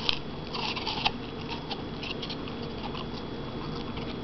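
A German shorthaired pointer × German shepherd puppy crunching a piece of raw apple, with a burst of crisp crunches in the first second and fainter chewing clicks after.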